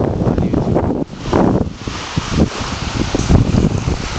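Wind buffeting a handheld camera's microphone, a loud, uneven rumble that comes and goes in gusts.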